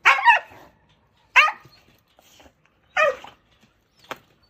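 A tan mixed-breed dog in a wire crate barking aggressively: three sharp bouts of barking about a second and a half apart, the first a quick double bark.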